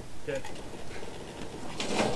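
A motorless Pontiac Fiero being pushed along a tilt-bed trailer, with a short scraping, rattling noise near the end as it starts to move.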